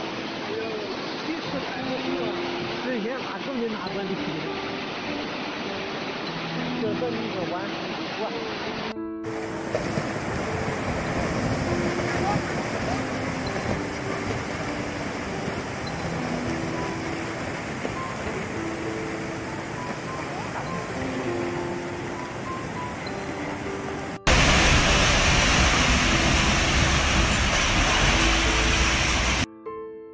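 Rushing floodwater, a steady loud noise of fast muddy water, with a soft melody of held notes laid over it. Near the end a much louder stretch of rushing noise runs for about five seconds, then cuts off.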